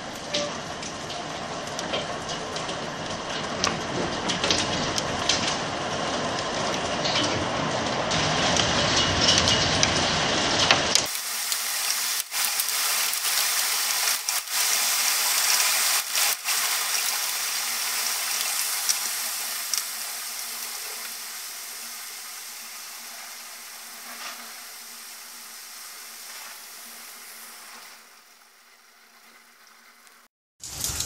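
Hailstorm: hailstones and rain pelting down, extremely loud, with many sharp individual hits. About a third of the way in, the deep part of the noise cuts out abruptly, and the pelting then slowly fades as the storm passes.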